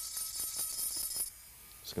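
Dental lab micromotor handpiece running a small bur against a denture's acrylic, scuffing the surface to roughen it before a repair: a faint high-pitched grinding hiss that stops suddenly a little over a second in.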